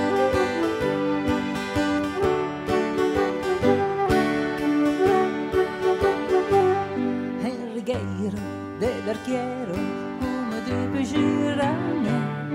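Live dance-band music: acoustic guitar and keyboard playing a tune with a steady beat, with a wavering melody line over it in the second half.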